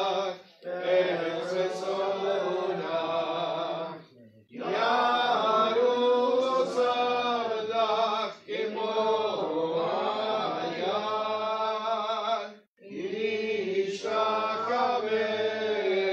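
A man chanting synagogue prayer in long sung phrases, with brief breaths about every four seconds.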